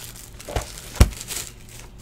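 A clear plastic card-pack wrapper crinkling in the hands, with a light click about half a second in and a sharper snap about a second in.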